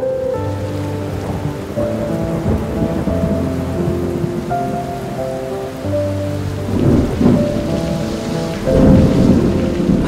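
Steady heavy rain with rumbles of thunder, the loudest two coming in the second half, over soft background music.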